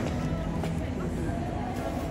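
Background crowd chatter: indistinct voices of passers-by over a steady low rumble.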